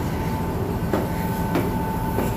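Steady low rumble of a car ferry's engines and machinery heard inside the passenger cabin, with a constant high whining tone over it.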